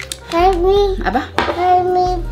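Speech: a toddler's drawn-out voice and a woman asking "Apa?", over background music.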